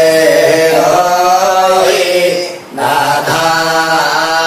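A voice chanting a Hindu mantra in long, held notes, breaking off briefly about two and a half seconds in and then going on.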